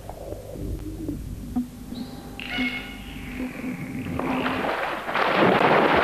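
Water rushing and splashing as a bottlenose dolphin churns the pool surface, building from about four seconds in to its loudest near the end. Before it there are a faint steady low tone and a few brief high whistle-like tones.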